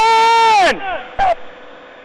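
A man's loud shout, held at one pitch for most of a second and then dropping away, followed by a second short shout about a second in.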